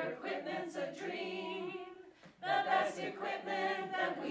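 A group of voices singing together a cappella, a choir-style rendition of a pop song, with a short break about two seconds in before the singing resumes.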